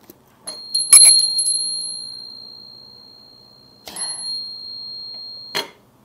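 A small metal bell struck a few times in quick succession about half a second in, leaving a high, clear ring that slowly dies away. A lighter strike near four seconds sets it ringing again, and the ring is cut short by a soft knock just before the end.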